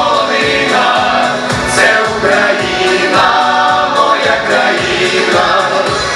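Mixed folk choir of men and women singing a Ukrainian song in harmony, amplified through stage microphones, over accompaniment with a steady low beat.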